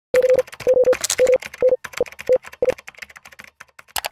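Electronic intro sound effect of rapid typing-like clicks mixed with short beeps, all at one pitch: about eight beeps in the first three seconds, then the clicks thin out and fade.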